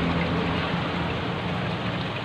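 Steady bubbling, trickling water noise from an aquarium's aeration and water circulation, with a low hum underneath.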